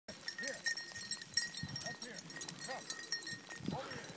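Dry grass and brush swishing and crackling as someone walks through tall dead cover, with a few short voice-like calls that rise and fall in pitch.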